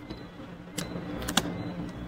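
A few light clicks from a computer keyboard and mouse as text is pasted into an editor, the loudest about one and a half seconds in, over a low steady hum.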